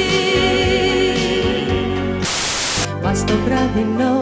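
A woman singing a ballad with band accompaniment, cut off about two seconds in by a half-second burst of static hiss. Then a different song picks up, with instrumental accompaniment.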